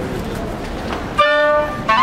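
Background murmur of an outdoor crowd, then a little over a second in a flute and clarinet ensemble comes in with a loud held chord, moving to new notes just before the end.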